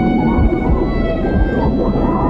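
Film soundtrack music with sustained held notes over a heavy, muffled low rumble of underwater sound.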